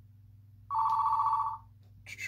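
A telephone ringing: one trilling electronic ring lasting about a second, starting a little under a second in.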